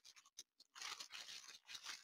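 Very faint rustling and crinkling of small plastic bags of diamond-painting drills being handled, with a few light clicks.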